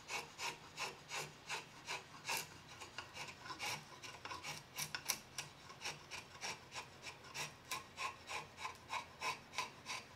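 A curved steel hand blade shaving a curly teak handle blank in short, rapid strokes, about three a second, each a brief dry scrape that lifts a small curl of wood.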